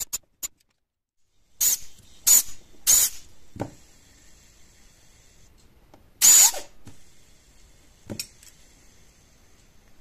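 Four short blasts of compressed air from a pistol-grip blow gun aimed into a stepper motor's shaft bearing, each a hiss with a thin whistle. Three come close together in the first few seconds, and the last, loudest and longest, comes about six seconds in. Light clicks of handling fall between them.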